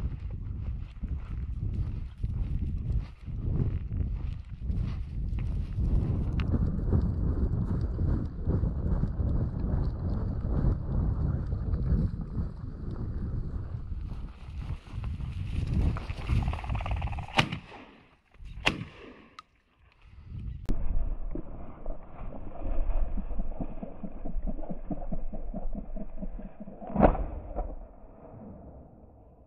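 Shotgun fired twice about a second apart, a little past the middle, with a fainter crack about two seconds later, during a chukar partridge hunt. Before the shots there is heavy wind rumble on the body-worn camera's microphone and footsteps over rocky ground. A loud knock comes near the end.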